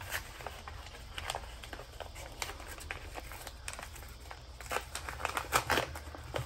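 Mail parcel packaging being opened by hand: scattered crinkling and rustling crackles, busier near the end.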